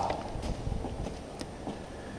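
Footsteps: a few irregular sharp taps on a hard floor.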